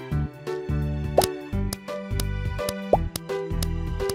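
Bouncy children's cartoon background music with a repeating bass line. Two quick rising 'bloop' sound effects come about a second in and near the end.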